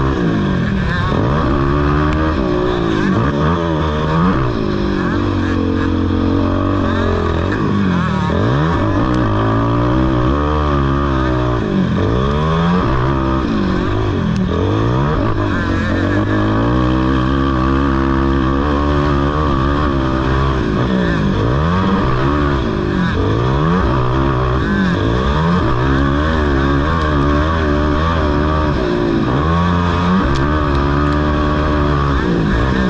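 ATV (quad) engine heard close up from on board, revving hard under racing throttle, its pitch climbing and dropping over and over every second or two as it is ridden around a dirt motocross track.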